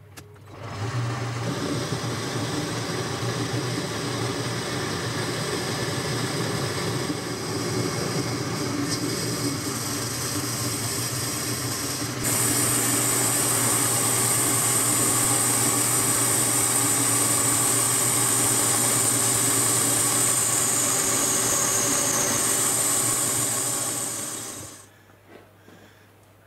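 Boxford metal lathe running steadily while turning down the diameter of a workpiece supported on a live centre. About 12 seconds in the sound steps louder and a high hiss joins it, and it dies away near the end.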